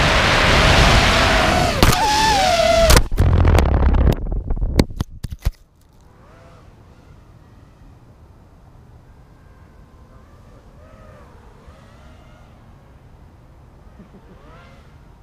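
Racing quadcopter's brushless motors and 5-inch propellers whining, the pitch rising and falling with the throttle, heard from the onboard GoPro. About three seconds in it crashes into a bush: a string of sharp clattering hits as the props strike branches, and the motors stop about five and a half seconds in, leaving only a faint low background.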